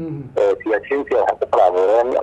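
Only speech: a man talking without pause.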